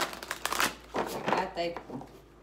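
A large deck of oracle cards shuffled by hand: a quick run of card snaps and rustles lasting about a second and a half.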